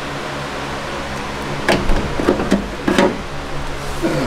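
Clicks and light knocks of hands working among the wires and connectors under a car's dashboard, a cluster of them about two to three seconds in, over a steady low hum.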